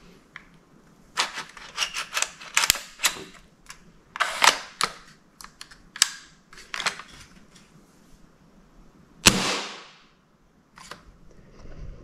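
Irregular sharp clicks and knocks in scattered clusters, then about nine seconds in one louder sharp crack with a short ringing tail.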